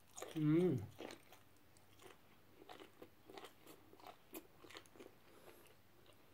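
A brief wavering vocal "mmm" as a piece of steamed squid goes into the mouth, then chewing of the rubbery squid with many short wet clicks and smacks.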